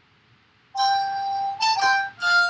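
Harmonica played: after a brief hush, one long held note comes in just under a second in, followed by two short notes at a different pitch near the end.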